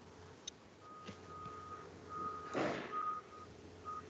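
Faint electronic beeping at one steady pitch, repeating in beeps of uneven length, with a brief rustle about halfway through.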